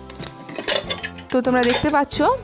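Lid of a Hawkins Contura hard-anodised pressure cooker being opened and lifted off, with metal clinks and clatter against the pot.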